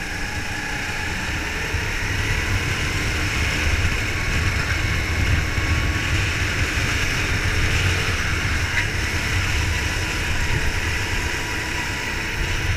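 Go-kart engine running under way on a lap, heard from an onboard camera as a steady drone that grows slightly louder a few seconds in.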